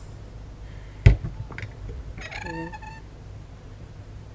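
A sharp click about a second in, followed by a fainter click, as a hinged aluminium lemon squeezer is handled and opened.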